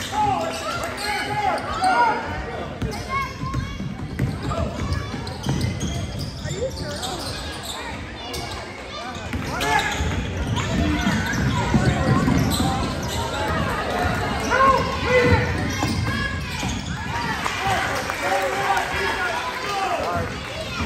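A basketball dribbled on a hardwood gym floor during play, with the voices of players, coaches and spectators calling out over it in the gym.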